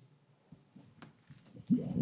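A pause in a meeting hall: near-silent room tone with a couple of faint clicks, then a voice starts up near the end.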